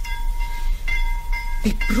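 Ship's departure signal as a radio-play sound effect: a steady, high-pitched tone that calls the last boarding before the steamer leaves. A man's voice comes in briefly near the end.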